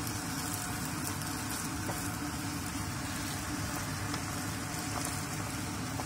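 Kailan (Chinese broccoli) and beef stir-frying in a nonstick frying pan over high heat, the small amount of added water and sauce sizzling and bubbling with a steady hiss.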